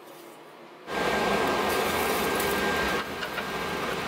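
A forge fire blown hard with forced air: after a quiet start, a loud steady rush with a thin whine begins about a second in. It eases a little near the end, where a few sharp crackles and pops come through.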